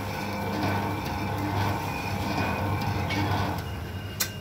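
Commercial planetary cake mixer running, its whisk beating cake batter in a steel bowl: a steady motor hum.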